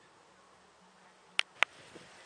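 Two sharp clicks about a quarter second apart, a little past the middle, over a faint steady low hum.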